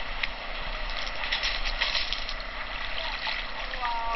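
Sea water splashing and sloshing: a steady wash of water noise, with a few sharper splashes in the middle.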